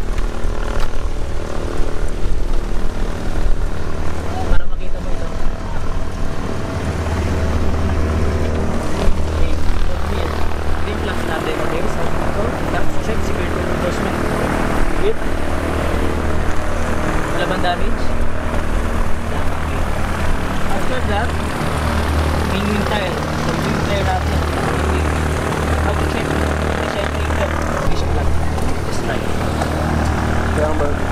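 A light aircraft's piston engine and propeller running steadily, a continuous low drone, with a deep rumble that swells and drops out from time to time.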